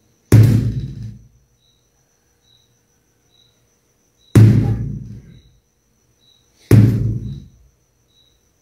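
Mallet striking a whole watermelon wrapped in rubber bands: three low thuds, the second about four seconds after the first and the third two seconds later, each dying away within about a second.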